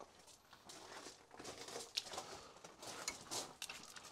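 Faint scattered clicks and rubbing as a campervan awning leg is pushed up into its clip behind the awning pelmet, with a sharper click about halfway through.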